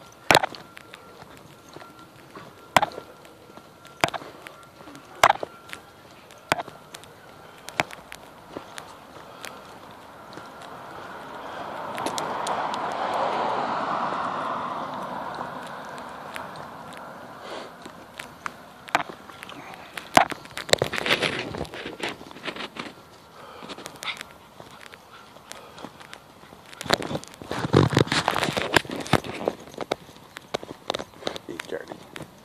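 Footsteps and scattered sharp clicks from walking dogs on leashes along a concrete sidewalk. Around the middle, a car passing on the street rises and fades over several seconds.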